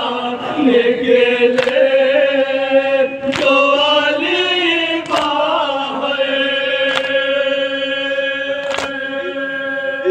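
Men chanting a noha in long, drawn-out sung notes, with hands striking chests in unison (matam) about every two seconds.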